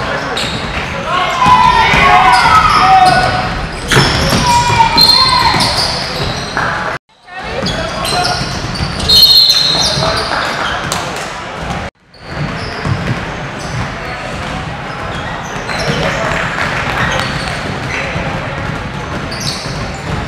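Basketball game sounds in a large, echoing indoor gym: players and spectators calling out, and a basketball bouncing on the hardwood court. The sound drops out briefly twice, about seven and twelve seconds in.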